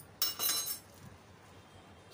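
A single bright ringing clink of a spoon against glass about a quarter of a second in, dying away within about half a second.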